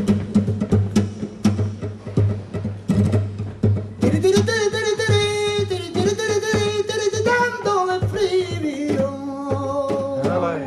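Flamenco guitar strummed in sharp irregular strokes, then from about four seconds in a male flamenco cantaor sings a long held, wavering line over the guitar, the note dropping lower near the end.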